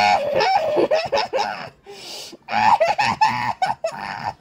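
A person laughing loudly in repeated bursts, easing off about two seconds in, then laughing again in quick, broken bursts.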